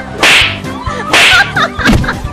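Two loud, sharp slap-like hit sound effects about a second apart, standing for blows, over background music.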